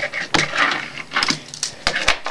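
Fingerboard skated on a wooden desk: its small metal trucks and wheels rattle and clack, with a few sharp clacks.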